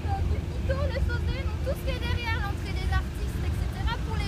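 People talking over a steady low rumble.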